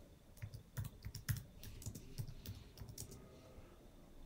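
Typing on a computer keyboard: a quick, irregular run of about ten faint keystrokes.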